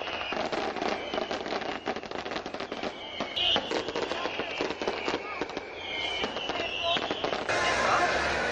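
Aerial fireworks going off: dense crackling and popping, with many rapid reports throughout. Near the end this gives way to a steady, louder din.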